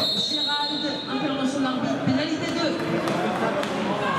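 Voices in a large indoor arena, with a few dull thuds among them.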